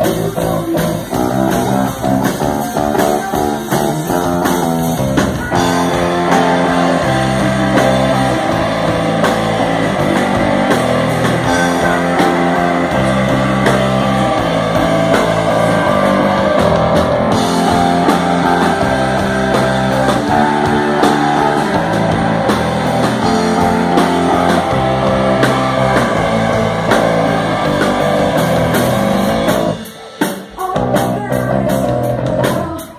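Live rock band playing: electric guitars, bass guitar and drum kit, getting fuller and louder with more cymbal about five seconds in.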